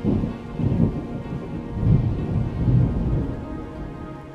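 A thunder rumble that starts suddenly and rolls in several swells before easing off, over steady rain and soft instrumental meditation music.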